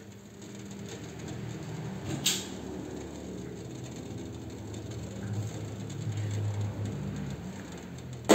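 Water boiling in the base of a steamer pot on the stove: a steady, low bubbling sound. A single sharp click comes about two seconds in.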